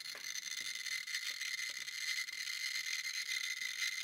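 Handheld Geiger counter clicking rapidly beside a piece of uranium ore bearing carnotite: the fast clicking is the sign of a count rate in the thousands of counts per minute.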